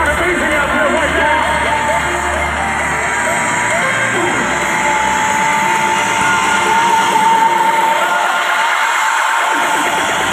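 Live amplified electronic music over a concert PA, heard from inside the crowd, with audience voices yelling and whooping throughout. The heavy bass drops out about a third of the way in, and a long held high note follows.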